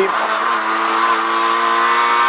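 Fiat Seicento Kit Car's four-cylinder engine pulling at steady revs in third gear, heard from inside the cockpit.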